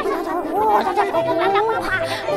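High-pitched, wordless voices of puppet characters chattering, their pitch sliding up and down.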